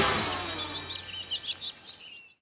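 The tail of the closing music fading out, with a quick run of high, twittering bird-like chirps, about ten of them, over the last second and a half.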